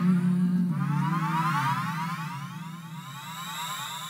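Electronic live-band music at the close of a piece: a low sustained drone with many high rising sweeps gliding over it. It slowly fades down.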